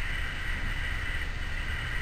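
A pause in speech filled by a steady low rumble of room noise, with a faint steady high-pitched tone above it.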